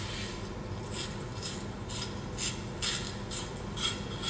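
A carrot being twisted against the stainless steel blade of a handheld spiral slicer, shaving off curls in a series of short rasping scrapes, about two a second.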